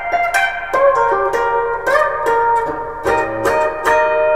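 Semi-hollow electric guitar playing the song's main riff an octave higher, high up the neck around the 18th fret: a quick run of picked single notes, with a couple of notes bent upward.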